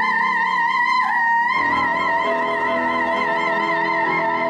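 Operatic soprano holding one long high note with a wide vibrato, over piano accompaniment; the note dips and settles slightly higher about a second in, and piano chords come in beneath it shortly after.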